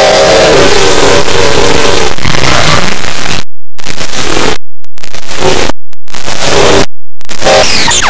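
Loud, harsh, heavily distorted noise with faint pitched tones buried in it during the first half. In the second half it cuts out abruptly four times, each time for a fraction of a second.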